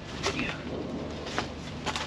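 Three short, sharp knocks from a steel propeller shaft being worked through a barge's stern tube and stuffing box, one near the start, one in the middle and one near the end, over a low steady hum.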